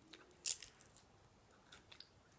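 Close-up mouth sounds of biting and tearing meat off a roasted duck leg: one sharp, loud bite about half a second in, then a few faint mouth clicks near the end.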